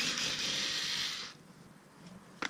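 Small cordless screwdriver running for just over a second as it backs out a wheel-arch liner screw, starting abruptly and stopping.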